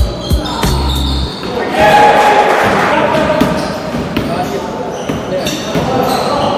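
Pickup basketball game sounds in a large gym hall: the ball bouncing on the wooden court, and a loud burst of players' shouting about two seconds in.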